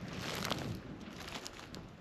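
Faint steady outdoor hiss with a few soft rustles and taps.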